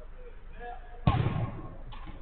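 A single loud thud of a football impact about a second in, with a short ringing tail, followed by a weaker knock near the end.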